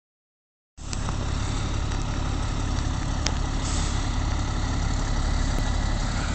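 Dennis truck's diesel engine running with a steady low rumble, starting about a second in after a short silence, with a light click about three seconds in.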